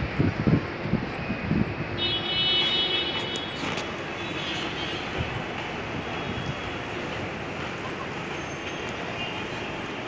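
Steady road-traffic ambience around an airport terminal forecourt, with voices in the first second or two and a short vehicle horn toot about two seconds in.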